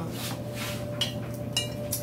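Rustling handling noise in short smears, over a steady low hum.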